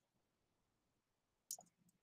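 Near silence, broken by one faint click about one and a half seconds in: a key pressed on a computer keyboard.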